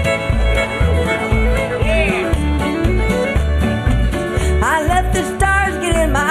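Country band playing the instrumental opening of a song. A fiddle carries the melody with slides between notes, over a steady bass beat of about two thumps a second.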